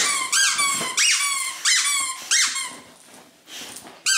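Squeaky plush dog toy being squeezed repeatedly by dogs at play: a quick run of rising-and-falling squeaks, about three a second, dying away after about two and a half seconds.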